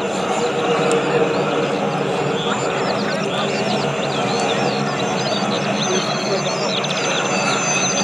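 Boeing Stearman biplane's Pratt & Whitney R-985 nine-cylinder radial engine running steadily as the plane flies by, growing a little louder in the first second.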